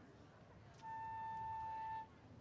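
A single high wind-instrument note held steady for about a second, starting a little before halfway.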